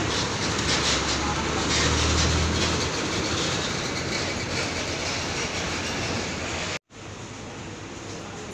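Intercity coach's diesel engine running close by: a deep rumble, heaviest in the first few seconds, under loud even engine and air noise. The sound cuts out abruptly near the end, and quieter background noise follows.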